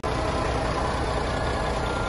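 Large flatbed truck's engine idling with a steady low hum.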